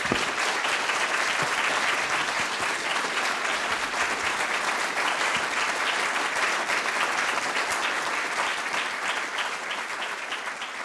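Audience applause: a large crowd clapping steadily, thinning slightly near the end so that single claps stand out.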